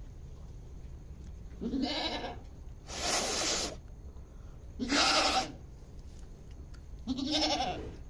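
Goat bleating four times, short calls a second or two apart, some of them harsh and raspy.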